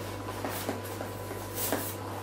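Small clicks and a brief rubbing scrape near the end as a loosened GoPro handlebar mount is slid along a slalom pole, over a steady low hum.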